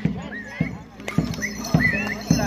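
Rhythmic percussion of a bantengan accompaniment, with strokes about every half second and short rising pitched calls over them. It dips quieter about a second in.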